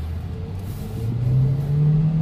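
A 2017 Chevy Cruze hatchback's four-cylinder engine heard from inside the cabin as the car accelerates, its low drone rising in pitch and growing louder from about a second in.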